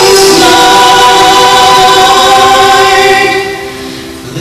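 A Christian worship song being sung, with long held notes that fade away near the end.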